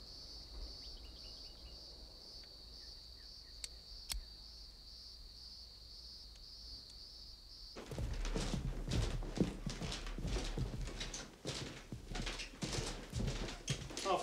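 Insects trilling steadily in a high, finely pulsing drone, with a couple of faint clicks. About eight seconds in the drone cuts off and a run of footsteps and knocks takes over, louder, as people walk into the hallway carrying bags.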